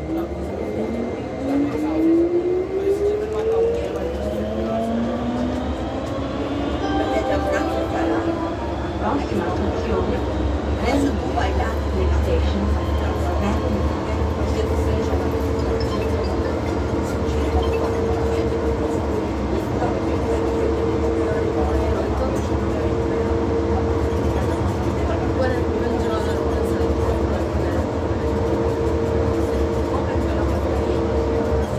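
Turin Metro VAL rubber-tyred automatic train heard from inside the car. Its electric traction motors give a whine that rises in pitch over the first several seconds as the train picks up speed, then settle into a steady running rumble with a held tone.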